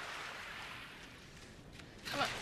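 Shallow seawater washing and splashing at the shoreline, a soft steady hiss that dies down near the end.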